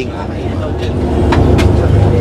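Steady low rumble of a coach bus's engine and road noise inside the cabin while it is moving, with a few faint knocks.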